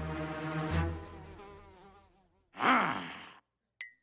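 Cartoon soundtrack: music notes fading out, then after a brief pause a short buzzy sound effect that falls in pitch, and near the end a few quick light clicks, about three a second.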